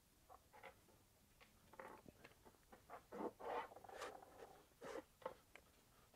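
Faint handling noise: a scattered run of light knocks, clinks and scrapes as metal impact-tool parts and a digital scale are moved about and set down on a workbench, busiest about three to five seconds in.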